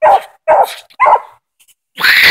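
Young English Coonhound pup barking treed at a raccoon: three short barks about half a second apart, and a louder, harsher one just starting at the very end.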